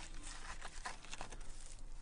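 A handful of wet sand-clay mixed with small gravel being pushed and pressed by hand into a crack in a compressed earth brick wall: faint gritty scraping and crackling of the mix against the brick.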